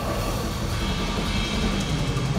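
Live metal band playing: a dense, steady wall of distorted electric guitars, bass and drums, heard loud from the audience.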